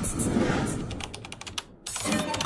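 A quick run of sharp clicks, like typing on a computer keyboard, stopping just before the end.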